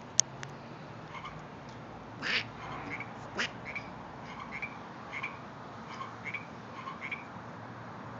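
Frogs calling from a rock pond, short croaks repeating every half second to a second, with a few sharp clicks, the loudest just after the start.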